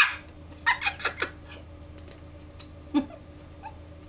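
A woman's laughter tails off into a few short, squeaky, high-pitched giggles about a second in, with one more brief squeal near the end, over a steady low hum.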